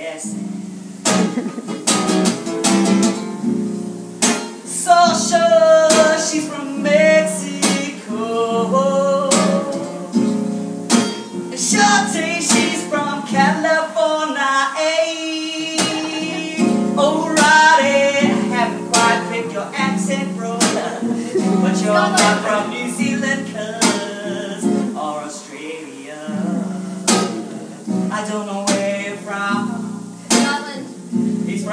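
A man singing while strumming an acoustic guitar, with the strummed chords running steadily under the vocal line.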